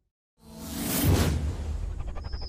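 A brief dead silence, then a whooshing sound effect from an animated channel-logo sting. It swells in about half a second in, peaks around a second in over a deep bass hit, and eases into a low sustained rumble.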